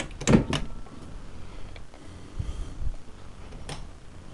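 An interior door being handled: a quick run of knocks and clicks in the first half-second, then a couple of soft low thumps and one more click near the end.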